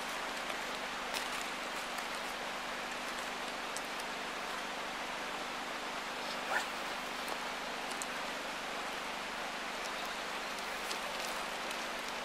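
Steady, even rush of splashing water.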